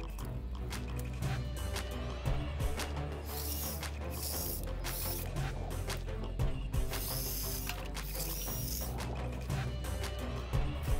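Background music, with a small battery-powered saw cutting dead tree limbs in two stretches, about three seconds in and again about seven seconds in.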